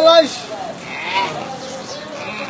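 An animal bleating: a loud, held, wavering cry that ends just after the start, then fainter cries about a second in.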